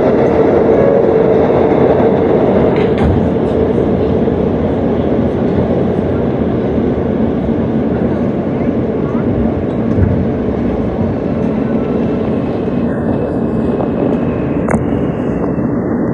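Steady rumble and hiss inside a New York City subway car on the E train, with a couple of short clicks.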